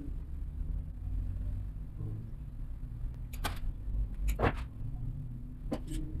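Hand tools and stiff wire being handled at an electrical panel: three sharp clicks in the second half, over a steady low rumble.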